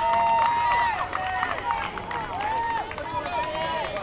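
Several high voices of spectators and players shouting and calling out over one another, with one long held shout in the first second.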